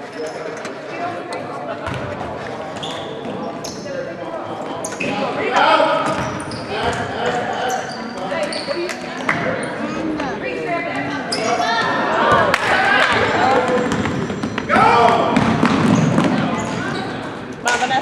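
A basketball bouncing on a hardwood gym floor amid voices of players and spectators, in a large, echoing gym. The voices grow louder in the second half.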